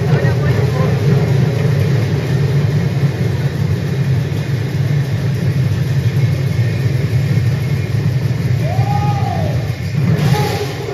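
A massed ensemble of khol, the Assamese two-headed barrel drums, played together by a large group, the many drums merging into a loud, continuous low rumble with voices mixed in. A short rising-then-falling tone sounds near the end.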